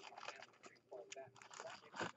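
Near silence with faint rustling and scratching: a baseball card in a plastic sleeve and holder being handled between the fingers.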